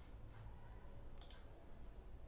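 Faint room hum with a sharp double click about a second in.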